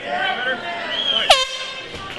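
An air horn sounds one long, steady blast starting a little past halfway, signalling the start of the MMA fight. Voices are heard before it.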